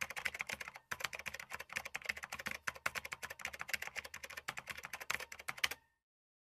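Rapid computer-keyboard typing, a dense run of quick clicks that stops suddenly near the end.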